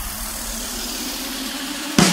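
Electronic dance music breakdown: the beat and bass drop out, leaving a hissing noise sweep that rises steadily in pitch as a build-up, with the full beat coming back in right at the end.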